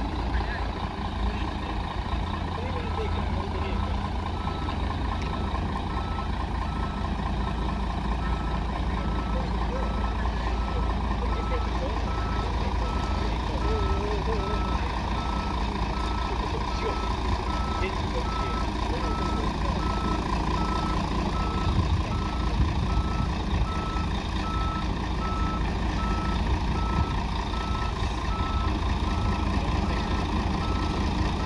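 Articulated single-deck bus reversing, its diesel engine running steadily under a reversing alarm that beeps at an even rate from about three seconds in.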